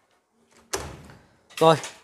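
A single sudden bang about three-quarters of a second in, dying away over about half a second.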